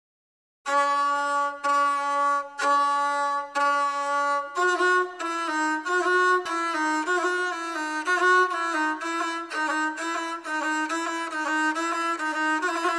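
Gusle, the one-stringed bowed Balkan folk fiddle, playing an instrumental opening. It starts just under a second in with four long bowed notes of about a second each, then from about halfway through moves to a quicker, ornamented melody a little higher in pitch.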